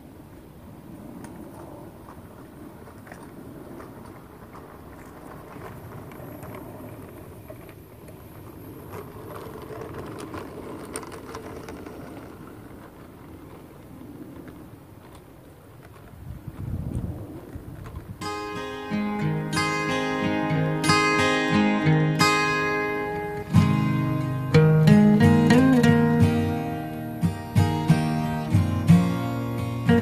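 A G-scale LGB locomotive pulling three coaches on garden-railway track, with only a faint steady running sound. A little over halfway through, much louder strummed acoustic guitar music comes in.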